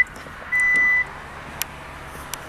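Hyundai Santa Fe power tailgate warning beeper: a steady electronic beep at one pitch lasting about half a second, following a matching beep just before, then a short click.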